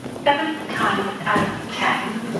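A person's voice speaking in short phrases, with a few short knocks among it.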